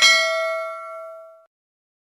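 Notification-bell ding sound effect: a single bright bell strike that rings and fades out by about a second and a half in.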